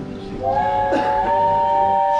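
Simulated steam locomotive whistle sounding a steady chord of several notes. It starts about half a second in and is held, played over the speakers of a mock train-car room.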